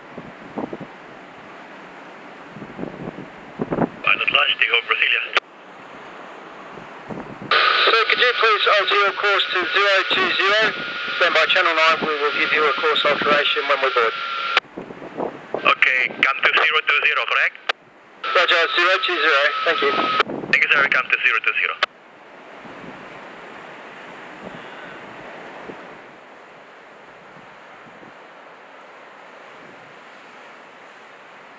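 Marine VHF radio chatter: bursts of thin, narrow-sounding voice that switch on and off abruptly, some with a steady whistle under them. From about two-thirds of the way in, only wind and surf are left.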